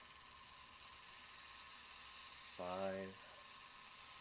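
Steady, faint, high-pitched hiss of corona discharge from a high-voltage electrokinetic lifter (ion craft) running under power. A single short spoken word about two and a half seconds in.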